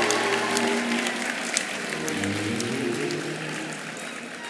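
Audience applauding over soft instrumental background music. The clapping and music both fade gradually.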